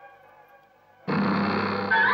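Dramatic background score: a lingering music phrase fades to near quiet, then a sudden loud musical sting with deep held notes enters about a second in, and a gliding tone swoops upward near the end.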